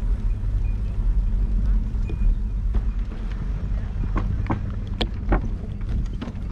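Low, steady rumble and hum of a slow-moving vehicle rolling along a brick-paved path, with a few short sharp clicks or rattles in the second half.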